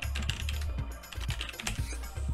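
Typing on a computer keyboard: a quick run of key clicks as a word is typed out.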